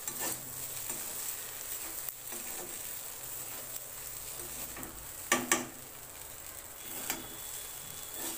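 Metal spatula stirring and scraping flattened rice with vegetables in a kadai, over a steady frying sizzle. Two sharp knocks of the spatula against the pan come a little past halfway.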